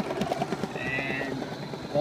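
Bernina 440 QE sewing machine running at speed as it stitches out a machine-embroidery design, a rapid, even needle chatter, with a brief higher whine about a second in.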